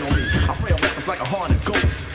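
Hip hop track with a steady drum beat, between rapped lines, with a warbling pitched sound over the beat in the second half.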